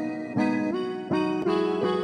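Instrumental hip-hop type beat in its intro: a melodic instrument line of held notes, a new note about three times a second, with no drums or bass yet.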